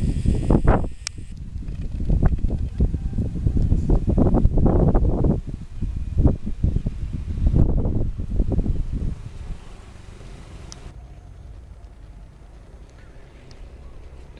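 A Thai kite's rubber hummer buzzing in the wind, in surging waves, dropping off about ten seconds in.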